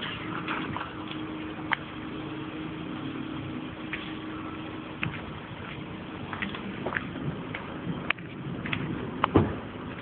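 A car moving off slowly, its engine running steadily, with scattered sharp clicks and a louder knock near the end.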